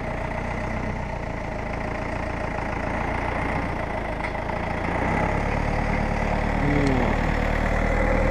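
Tractor diesel engine idling steadily, growing louder and deeper from about five seconds in as it is given a little throttle.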